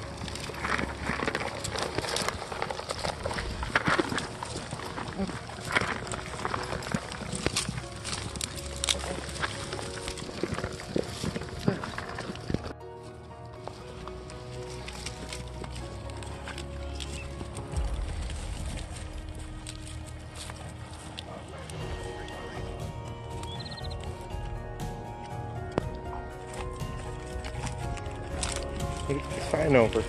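Goats feeding at close range, with clicks, rustling and occasional calls, over background music. The close sound drops out abruptly about halfway through, leaving mostly the music's steady tones with a few scattered clicks.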